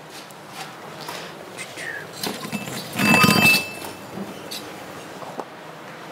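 Bronze ingot lifted off a stack, knocking against the ingots beneath it with a short metallic clang that rings for about half a second, about three seconds in.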